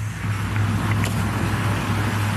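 Steady outdoor background noise with a constant low hum from a vehicle engine running nearby.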